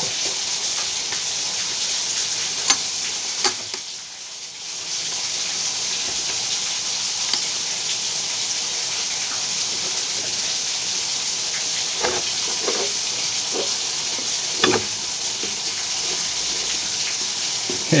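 Steady hiss of water running out of a dismantled stopcock, left open to drain because the supply cannot be shut off. There are a few light clicks of hands on metal pipe fittings.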